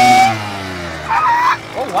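Kawasaki KX100 two-stroke dirt bike engine held at high revs, then the throttle is shut about a third of a second in and the revs fall away toward idle as the bike rolls to a stop. There is a brief higher-pitched sound a little past a second in.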